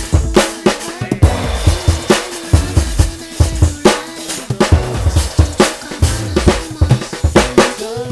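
Jazz drum kit played with bundled rods over an instrumental backing track: quick, busy snare, tom and kick-drum strikes with cymbal hits, over a bass line.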